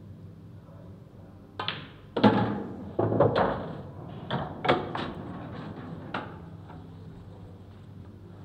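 Pool shot: the cue strikes the cue ball, balls click together and a red is potted, followed by a string of sharp knocks and thunks of ball on ball, cushion and pocket. The knocks are loudest about two to three and a half seconds in and die away by about six seconds.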